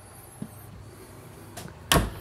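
Quiet room tone, then a single sharp knock near the end as a hand meets a wooden cabinet door.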